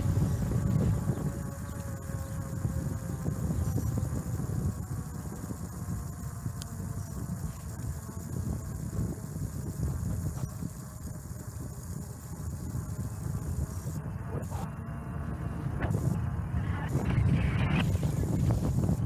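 Wind rumbling on the microphone of a bicycle-mounted camera, over the roll of bike tyres on asphalt, louder in the first second and again near the end.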